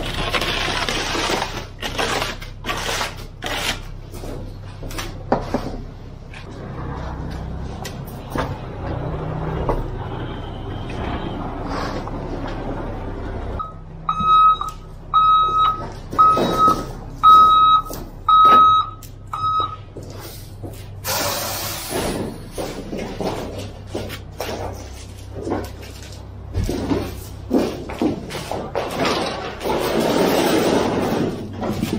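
A concrete mixer truck runs steadily while wet concrete slides down its metal chute, with scraping and knocking throughout. In the middle a beeper sounds a regular string of high beeps, about one a second, for around six seconds, like a truck's reverse alarm.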